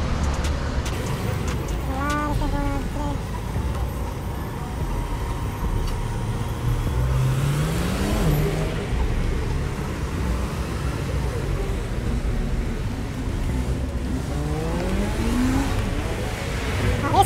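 City street traffic: cars running by over a steady low rumble, with one engine rising in pitch as it speeds up about seven seconds in. Passers-by's voices come in briefly.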